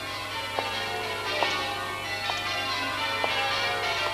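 Bells ringing, a new strike about every second over long, overlapping ringing tones.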